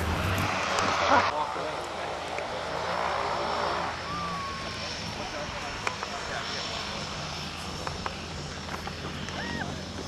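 Steady drone of a propeller aircraft, with a rush of wind on the microphone for the first second or so.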